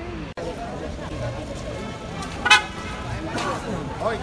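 Street ambience of a busy city square: crowd voices and passing traffic, with one short, loud vehicle-horn toot about two and a half seconds in.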